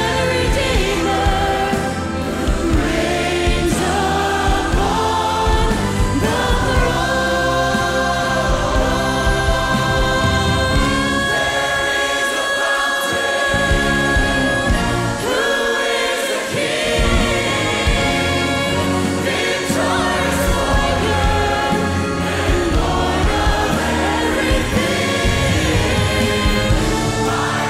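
Live worship song: a female lead singer with a choir and a full band behind her. The bass end drops away briefly twice around the middle.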